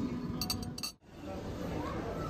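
A few light clinks of a china cup, spoon and saucer over background chatter, then the sound cuts out briefly about a second in and gives way to the steady murmur of a busy room.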